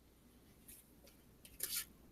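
Mostly quiet room tone through a video call, with a short, faint rustle about one and a half seconds in.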